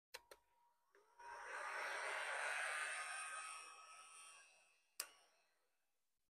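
Two switch clicks, then a heat gun's blower spinning up into a rushing air sound with a thin fan whine. It builds over about a second and then fades away, with another sharp click about five seconds in. This is a heavy load being drawn from a 12 V LiFePO4 battery through an inverter.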